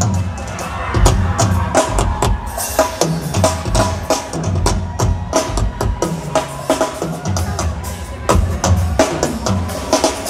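Acoustic drum kit played in a live solo: dense, irregular strokes on drums and cymbals over bass-drum kicks, with no break.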